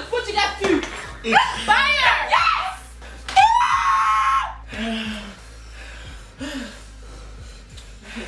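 A young woman screaming once, a held, high cry of about a second, at the burn of a very spicy bite. Excited, wailing voices come before it.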